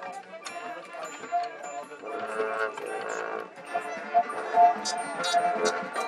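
High school marching band playing its field-show music: pitched notes from the front ensemble's mallet percussion, with the full band of horns swelling in about two seconds in and a few sharp percussion hits near the end.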